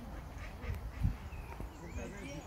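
Duck quacking, with a brief low thump about halfway through.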